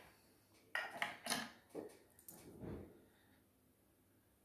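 Faint clicks and scrapes of small metal ukulele tuning machines being handled and pushed into the headstock holes, a handful of short sounds in the first three seconds.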